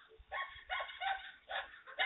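A dog barking, about five short barks in two seconds, heard through a Ring doorbell camera's narrow-band microphone.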